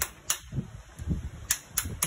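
Wooden mallet striking a stone crab claw to crack its hard shell: a few sharp knocks, the last two close together near the end.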